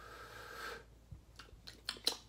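Soft breath and mouth sounds from a man pausing between words: a faint breath out with a slight hum, then a few small mouth clicks near the end.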